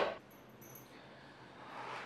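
Near silence: faint room tone, after a brief click at the very start.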